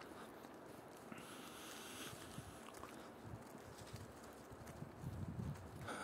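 Quiet room tone: a faint steady hiss with a few soft low thumps in the second half.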